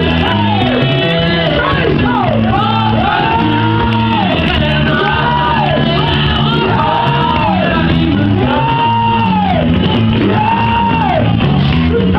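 Upbeat gospel worship music with a stepping bass line, with voices shouting and singing over it in a large hall.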